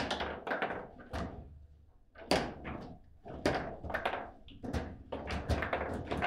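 Foosball table in play: a rapid run of sharp knocks and clacks as the ball is struck by the rod-mounted players and bounces off the table walls, with a short lull about two seconds in.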